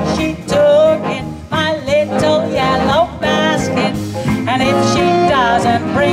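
A big band with saxophones, brass, piano and upright bass playing a swing tune, with a woman singing the melody.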